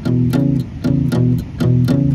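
Acoustic guitar playing a palm-muted blues shuffle on the two low strings, at about four picked strokes a second. The fretting finger alternates between the second and fourth frets of the fifth string over the open sixth string, the classic boogie pattern of fifth and sixth.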